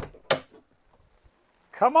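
Two sharp clicks about a third of a second apart as someone climbs the fold-out steps of a travel trailer's entry door.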